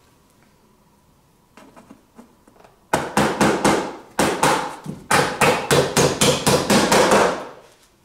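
Small hammer nailing a lid onto a wooden box: a few light taps to start the nail, then from about three seconds in a fast, steady run of blows, about four a second.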